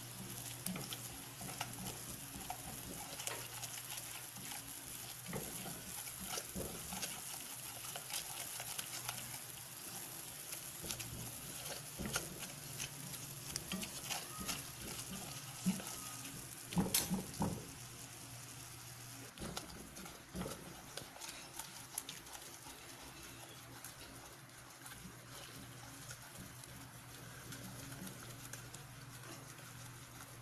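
Butter and flour roux sizzling gently in a small saucepan over low heat, with a silicone spatula scraping and tapping against the pan as it is stirred continuously. A few louder knocks of the spatula come about sixteen to seventeen seconds in.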